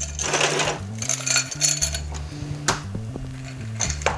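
Ice cubes rattling and clinking as they are scooped into a frosted glass, with a few sharp clinks later on, over background music with a steady bass line.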